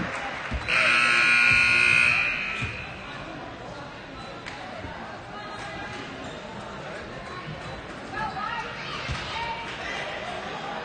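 Gym scoreboard horn sounding once for about a second and a half, the loudest sound here, over echoing voices and a few thuds of a basketball bouncing on the hardwood floor.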